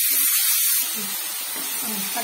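Chopped onions and tomatoes sizzling in hot oil in a kadai while being stirred with a slotted metal spoon: a steady hiss that eases a little about a second in.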